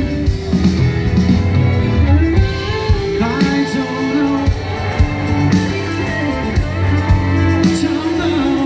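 Live rock band and symphony orchestra playing together: drum kit, bass, electric guitar and strings, with a lead line that bends up and down in pitch over the band.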